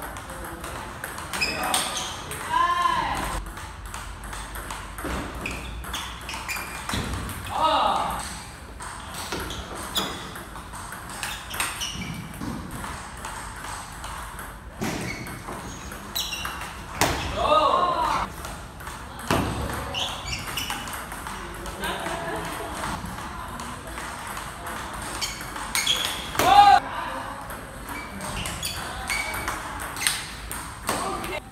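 Table tennis rallies: a celluloid ball clicking back and forth off rubber-faced bats and the table top. A few short, loud, high-pitched squeals rise above the clicks.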